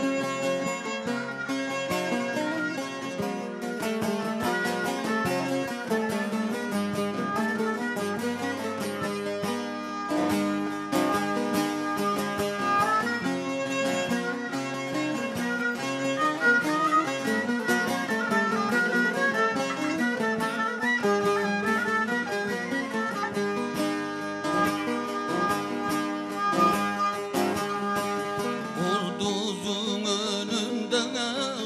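Bağlama, the Turkish long-necked saz, played as an instrumental passage of a folk tune: a continuous run of quick plucked notes with no singing.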